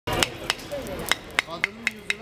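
Repeated sharp taps of a long knife against the neck of a clay testi kebab pot, about six strikes in two seconds at uneven spacing, each with a brief ringing click, as the sealed pot is cracked open.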